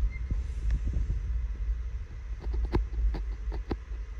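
Low, throbbing rumble of a handheld phone being moved about, with a few sharp clicks or taps in the second half.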